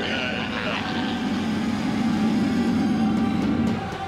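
A low, rumbling creature growl from the shadowy monster, held for about three seconds under dramatic cartoon music.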